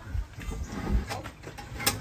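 A loose wooden support beam being handled and lowered by hand: a few low, dull thuds and a single sharp knock near the end.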